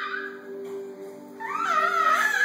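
A baby squealing in high, gliding cries, a short one at the start and a longer one from about a second and a half in, over steady background music.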